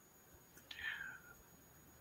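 Near silence over the call audio, broken by one brief, faint whispered utterance a little before the middle.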